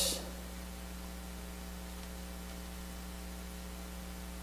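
Steady electrical mains hum with a faint hiss underneath, unchanging throughout.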